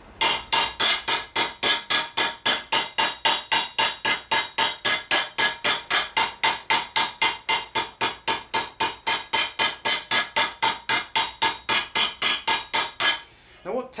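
Planishing hammer tapping a metal armour vambrace from the inside against a slightly dished T-stake, lifting out a small dent: a long, even run of light ringing metal strikes, about four to five a second, stopping about a second before the end.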